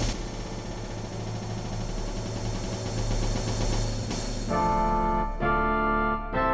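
Computer-rendered (DTM) orchestral music: a cymbal crash at the start rings away over about four seconds above a low drum rumble, then the full ensemble comes in with sustained chords about four and a half seconds in, each broken off by a short gap.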